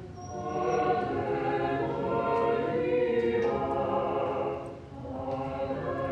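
A choir singing a slow hymn in long held notes, with a brief break between phrases about five seconds in.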